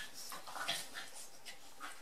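Two dogs play-fighting and mouthing each other, with a string of short, high whimpers, the loudest about two-thirds of a second in.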